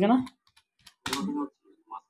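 A few separate keystrokes on a computer keyboard, typing.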